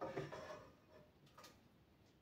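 Faint clatter of kitchenware being handled, a clink with a short ring just as it starts and a second, briefer clink about a second and a half in.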